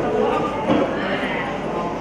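A woman speaking into a handheld microphone; only speech is heard.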